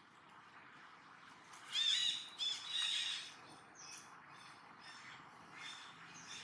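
Two quick runs of short, high-pitched calls, each note rising and falling, about two seconds in, over a faint background hiss.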